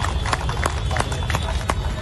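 Irregular sharp clicks, about five a second, over a steady low rumble.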